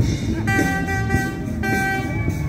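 A car horn honks twice: a steady blast of about a second starting half a second in, then a second blast just before the end. Rock music with a drum beat plays underneath.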